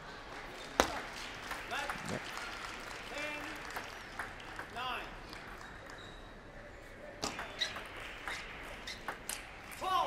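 Table tennis ball struck by rackets and bouncing on the table during a rally: a few sharp clicks, one about a second in and several more near the end.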